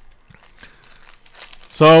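Foil trading-card pack wrappers crinkling faintly and irregularly as they are handled.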